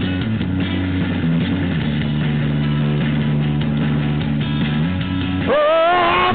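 Rock music with electric guitar over a stepping bass line and drums, an instrumental stretch with no singing. Near the end a high lead note slides up and is held with vibrato.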